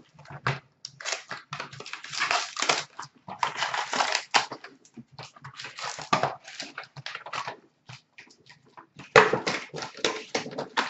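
Foil trading-card pack wrappers being torn open and crinkled by hand, in irregular bursts of crackling that start and stop throughout.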